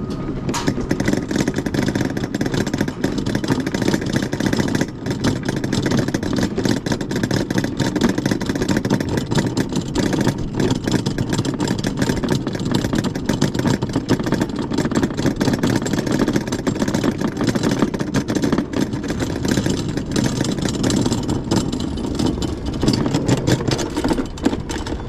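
Wiegand summer bobsled running down its metal trough: a steady rolling rumble from the sled's wheels on the track, with many small rattles and knocks.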